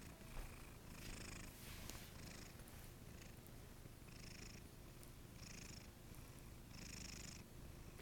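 Domestic cat purring, faint and close to the microphone: a steady low rumble with soft breathy swells a little over a second apart.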